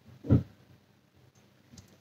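One short spoken word, then quiet room tone with a few faint small clicks near the end.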